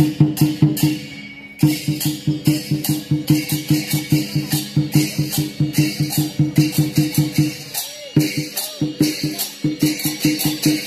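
Chinese lion-and-dragon-dance percussion: a drum with cymbals beating a fast, steady rhythm of about three strikes a second, broken off briefly about a second in before starting again.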